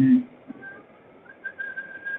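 A faint, thin whistle holding one high pitch, stepping up slightly a little over a second in.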